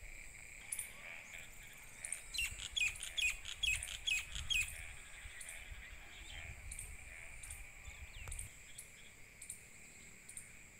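A bird calls a quick run of about six sharp chirps, each falling in pitch, from about two seconds in until about halfway through. Under them runs a steady, high insect drone of crickets.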